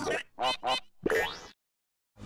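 Two short, pitched cartoon-style sound effects in quick succession, then a rising glide, then the audio cuts out to silence about three-quarters of the way through.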